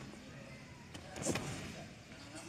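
Background noise of a busy gymnastics hall, with a single thud about a second in.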